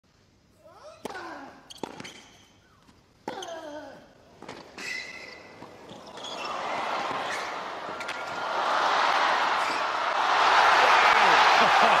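Tennis rally on a hard court: four sharp racket hits on the ball in the first five seconds, with short vocal sounds after several of them. Then crowd cheering and applause swell up as the point is won, loudest over the last three seconds.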